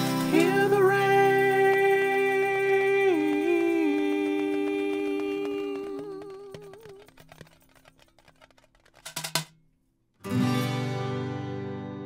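The close of a song for acoustic guitar and voice. A long sung note wavers and fades out with the guitar by about seven seconds in. After a short, almost silent gap, one more guitar chord is struck near the end and rings out.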